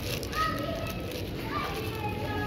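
Indistinct voices of other shoppers in a large supermarket, among them a high, bending voice a little way in, over a steady low hum.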